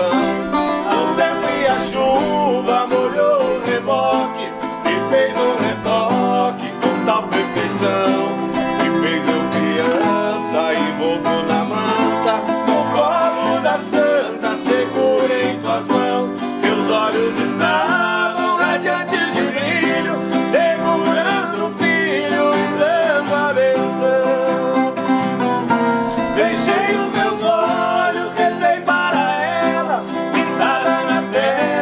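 Two men singing a sertanejo duet while strumming a nylon-string acoustic guitar and a viola caipira.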